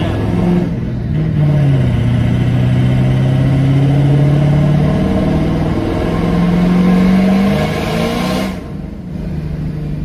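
Ford 6.0 Powerstroke V8 turbodiesel pulling under throttle, heard inside the cab. The engine note climbs slowly for several seconds, then drops sharply with the rushing noise as the throttle is lifted near the end. The clutch is worn out and slipping and won't hold the gear.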